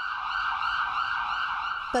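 Emergency vehicle sirens sounding steadily from a convoy of ambulances and police vehicles.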